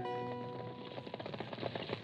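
A men's chorus holds the last note of a cavalry marching song, fading out in the first second. Under it and after it comes the steady irregular clatter of a column of horses' hooves, a radio sound effect.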